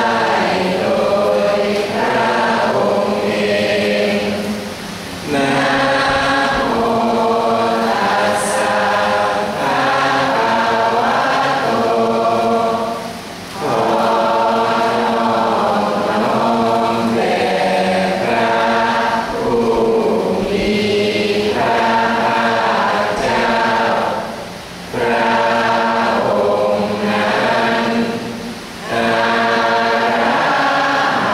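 Thai Buddhist chanting in Pali by a group of voices, long phrases held on a narrow range of pitches, broken by short pauses for breath between phrases.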